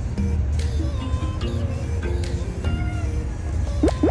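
Background music over the steady low rumble of a car cabin on the move. Near the end, a quick run of rising whistle-like glides sounds, an edited-in comic sound effect.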